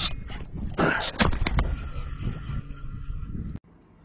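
A man's short frustrated groan about a second in, after losing a fish, over low wind rumble and handling noise on the microphone, with a few sharp clicks. The sound cuts off abruptly near the end into a quiet room.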